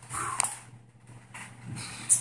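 A sip of beer from a glass, with one sharp click about half a second in, followed by quiet.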